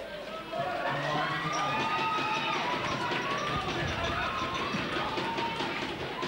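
Fight crowd shouting and cheering at the end of a round, many voices overlapping, louder from about half a second in.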